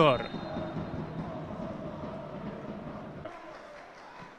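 Faint stadium ambience with a low murmur of distant voices, slowly dying away toward the end; a man's word trails off at the very start.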